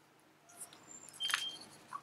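A few faint short clicks and a brief scratch from a ballpoint pen and hand moving on paper, loudest a little past a second in.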